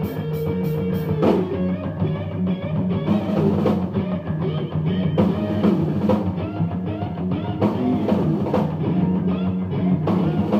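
Live rock band playing with electric guitars and a full drum kit.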